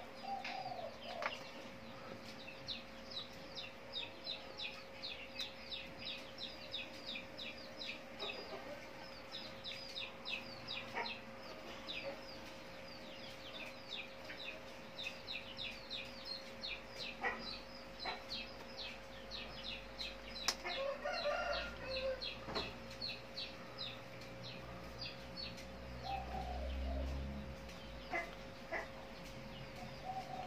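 Chickens and small birds calling: rapid high chirps go on throughout, with a few lower clucking calls, the longest about 21 seconds in, over a faint steady hum.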